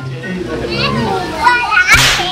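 Young children's voices at play, calling out, with high-pitched rising voices near the end.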